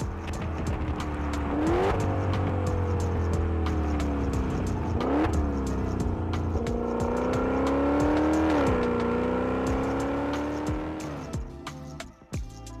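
Twin-turbo 3.8-litre V8 of a Maserati Levante GTS running hard, its engine note climbing and falling in pitch several times, with quick jumps about two, five and nine seconds in, then dying away near the end.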